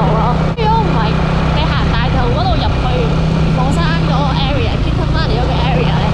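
A motorbike's engine running steadily at road speed, a low hum with wind and road noise, under a woman talking throughout.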